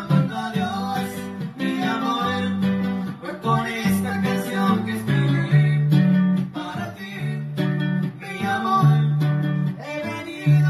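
Live conjunto music: a diatonic button accordion playing the melody over a strummed guitar, with a man singing.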